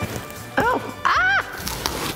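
A woman's two short, excited wordless exclamations, each rising and then falling in pitch, as she opens the box and sees the yarn inside. A brief rustle of cardboard follows near the end.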